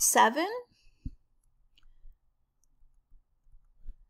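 A woman's voice finishing a word, then faint stylus taps and knocks as a pen writes on a tablet screen, with one knock about a second in and another near the end.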